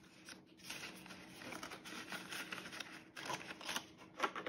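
Faint rustling and crinkling of plastic cash envelopes and paper bills being handled, a little louder near the end.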